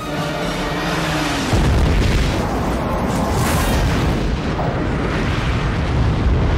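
Film sound effect of a Klingon starship exploding under the film's music. A deep boom comes about a second and a half in, and a dense rumbling blast carries on after it.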